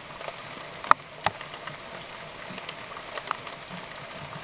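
Steady rain falling, picked up by a trail camera's microphone as an even hiss, with a few sharp ticks.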